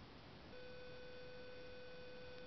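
Faint background noise, then about half a second in a steady humming tone starts and holds.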